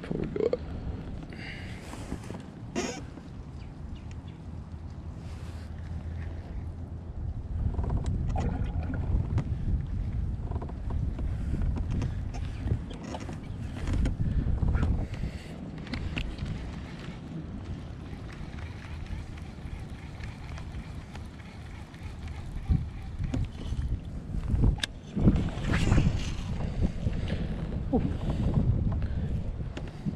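Wind buffeting a chest-mounted action camera's microphone as a low, uneven rumble, with water against a kayak hull and scattered sharp clicks and knocks from handling a baitcasting rod and reel.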